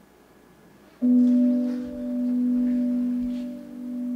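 Quiet for about a second, then a held instrumental chord starts suddenly and rings on, swelling and easing in loudness twice.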